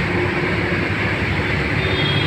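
Steady engine and road rumble heard from inside a moving bus, on a wet road.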